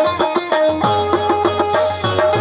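Instrumental passage of traditional folk music without singing: a harmonium's held tones under quick, decaying plucked notes, over a low, regular drum beat.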